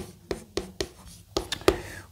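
Chalk on a chalkboard as lines are drawn: a handful of sharp taps spaced irregularly, with faint scratching between them.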